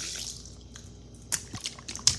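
Wet mouth sounds close to the microphone: a soft slurp at the start, then a few short wet clicks and smacks near the end.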